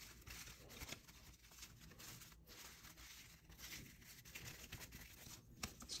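Faint rustling and light clicking of a handful of cardboard trading cards being shuffled and sorted by hand.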